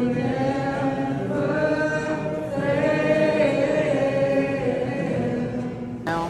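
A church congregation singing a worship song together, many voices holding long notes.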